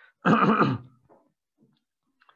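A man clearing his throat once, a short rasp lasting about half a second, starting a quarter second in and trailing off.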